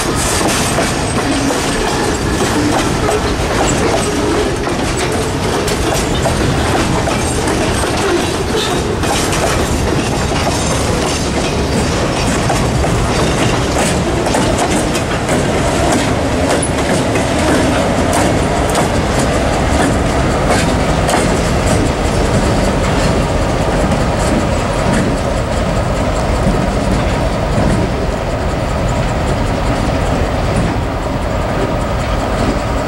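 Freight cars rolling steadily past at close range, wheels clicking over rail joints, as they are shoved by an EMD GP38-2 diesel locomotive.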